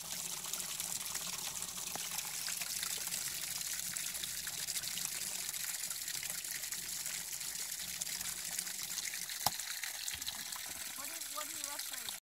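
Water pouring steadily out of a six-gallon Atwood RV water heater tank as it is drained. There is a single sharp click about nine and a half seconds in.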